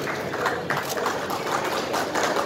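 A small group clapping hands, a quick, irregular run of claps.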